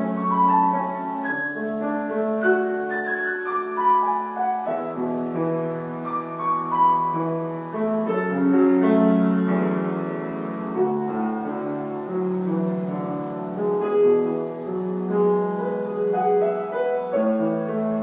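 Solo grand piano playing a flowing impressionistic piece in A major, with many sustained, overlapping notes ringing together.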